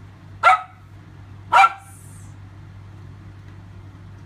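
A dog barking twice, two short sharp barks about a second apart, over a steady low hum.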